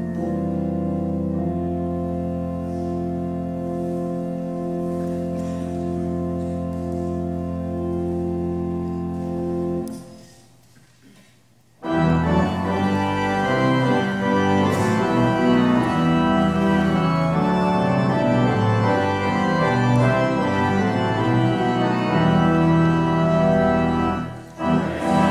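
Church organ music: held chords that fade away about ten seconds in, then after a pause of about two seconds the organ starts again, louder, with a moving, busier passage.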